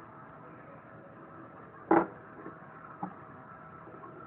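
Plastic Littlest Pet Shop figurine knocked against a wooden tabletop: one sharp knock about two seconds in and a lighter tap about a second later, over a faint steady hum.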